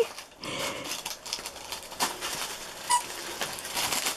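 A husky snuffling at and mouthing a plush toy on a shag rug: soft rustling and sniffing, with one brief high note about three seconds in.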